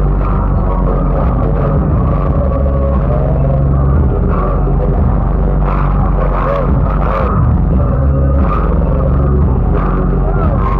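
Loud, bass-heavy concert sound from a stage PA, recorded on a phone so the low end rumbles, with held bass notes shifting every second or two. Crowd shouts and whoops rise over it a few times in the second half.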